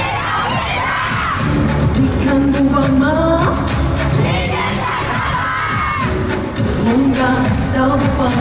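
Live pop concert music with a steady beat, heard over a cheering crowd, recorded from within the audience.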